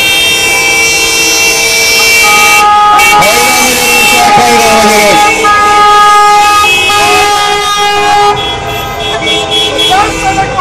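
Many car horns honking together in a long, loud, overlapping chorus of steady notes at different pitches, from a slow-moving line of cars, with voices shouting over them; the horns thin out near the end.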